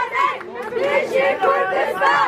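A crowd of mourners' voices, many people calling out at once and overlapping, around a coffin carried through the crowd.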